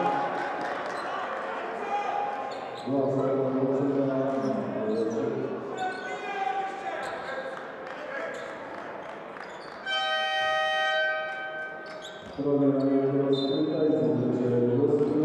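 Indoor basketball game sound in a large hall: the ball bouncing and players moving on the court, under a crowd of voices that rises and falls in sustained, chant-like stretches. About ten seconds in, a steady horn-like tone sounds for about a second and a half.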